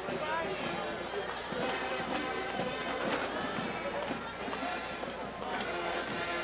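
Stadium crowd murmur with music playing in the stands, steady and moderate, during a break between football plays.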